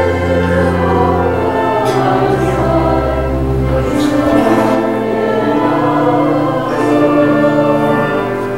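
Congregation singing a Pennsylvania Dutch hymn in long held notes, with deep sustained bass notes underneath that sound like organ accompaniment.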